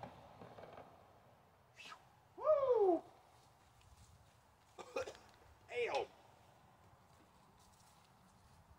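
A man's short wordless vocal exclamations, startled by ants on the bike: a longer cry falling in pitch about two and a half seconds in, then two brief yelps around five and six seconds.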